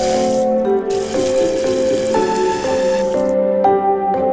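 Background music with steady, changing notes over the splash of water running from a single-lever bathroom mixer tap into a basin. The water sound drops out briefly under a second in and again near the end.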